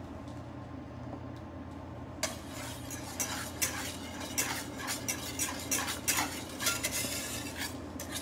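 Wire whisk beating butter into a beurre rouge in a stainless steel pan, the wires clicking and scraping against the metal in quick, irregular strokes from about two seconds in, over a low steady hum.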